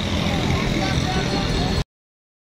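Outdoor city ambience: a steady low rumble of traffic with faint distant voices, cutting off suddenly near the end.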